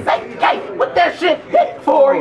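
A man rapping a cappella, voice only, in quick, loud phrases.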